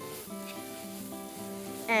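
Onions sizzling in a skillet as they are stirred while they caramelize, under background music holding long, steady notes.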